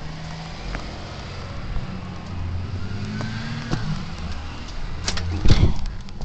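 School bus engine running close by, a steady low hum. Near the end there is a loud knock with a brief rustle.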